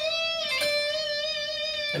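Electric guitar holding one sustained note that rings steadily with its overtones, closing a lead phrase of an improvised solo.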